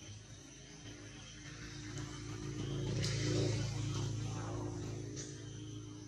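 A motor vehicle passing: a low engine rumble swells to a peak a little past the middle and fades. A steady high insect drone runs underneath.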